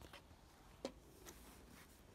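Near silence, with one faint short click a little under a second in.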